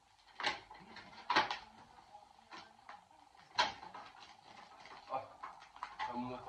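Clear plastic tube of Christmas baubles being handled: a few sharp plastic clicks and knocks as the ornaments shift and are drawn out, three strong ones and a softer one near the end.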